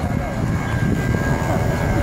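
People talking close to the microphone over a loud, uneven low rumble.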